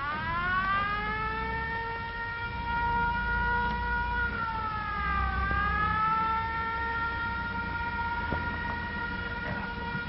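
Mechanical wind-up siren winding up at the start and then held at a steady wail, sagging briefly about five seconds in before climbing back, over a low rumble.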